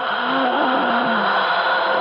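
A radio drama's sustained sound cue: several held tones sounding together, swelling in at the start and then holding steady, with a faint wavering low line beneath.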